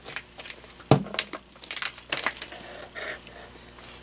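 Handling noise on a workbench as a power cord and its wires are moved about: a sharp knock about a second in, then several lighter clicks and rustles.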